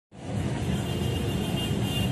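Steady low rumble of street traffic, including motorcycle tricycles.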